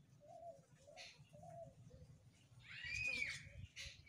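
Faint bird calls: a string of soft, short low calls in the first half, then a louder arching call about three seconds in.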